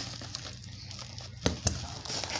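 Black plastic mailer bag crinkling as a child's hands pull at it to tear it open, with two sharp snaps close together about a second and a half in.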